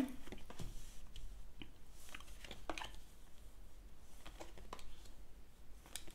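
Oracle cards drawn from the bottom of a deck and laid down one by one on the table: a few faint, scattered slides and taps of card on card and card on table.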